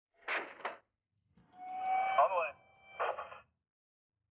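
Short bursts of radio transmission: a crackle, then a louder stretch with steady tones and a quick warble, then another crackle, with no intelligible words.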